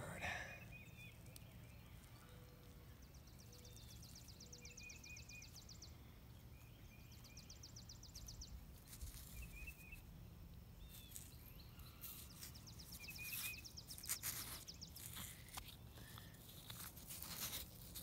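Faint outdoor birdsong, short repeated chirps and now and then a fast trill. From about halfway on come crunching and scraping of sandy soil and stone as a stone spear point is lifted out of the sand and handled in the fingers.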